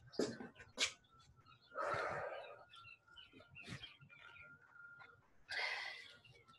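Faint, heavy breathing from someone catching their breath after a hard interval: two long exhales, about two seconds in and near the end, with a few small clicks between.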